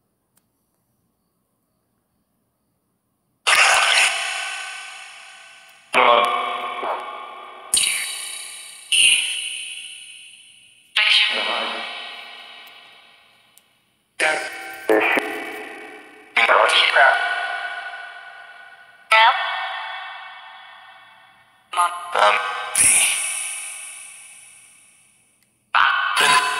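Necrophonic spirit-box app playing short snippets from its sound bank through heavy echo and reverb. After about three and a half seconds of silence come about eleven sudden voice-like fragments, each ringing out in a long, decaying echo tail.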